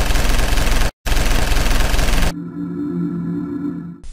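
Intro logo sting: a loud rushing noise that cuts out for an instant about a second in, then gives way a little past two seconds to a steady low synthesized chord.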